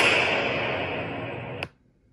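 Countdown-intro sound effect: a loud noisy swell that fades away over about a second and a half, then stops with a sharp tick, leaving near silence.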